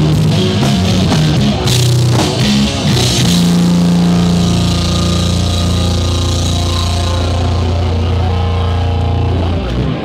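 Punk rock band playing live with electric guitar, bass and drum kit. About three seconds in, the drumming stops and the band holds one chord that rings on steadily for several seconds, then stops abruptly just before the end.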